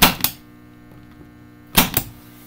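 Spring-loaded punch-down tool snapping twice, about two seconds apart, as a telephone wire is punched down again onto a patch panel block after the first punch did not seem to seat. A steady electrical hum runs underneath.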